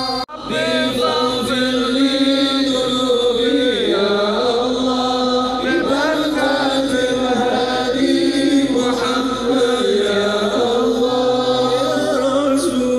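Islamic sholawat chanting, voices singing long held notes over musical accompaniment. The sound drops out briefly just after the start.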